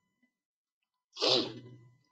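A man's single short sneeze about a second in, a sudden loud burst that fades away.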